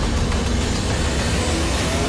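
Trailer sound design: a loud, steady low rumble with hiss over it, carried across a cut to the title card.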